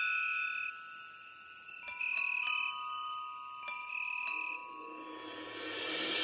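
Song intro: sparse bell-like chime notes struck in small clusters about two seconds apart, each ringing on, over a faint high steady shimmer. Near the end a swell rises in loudness as the full music builds.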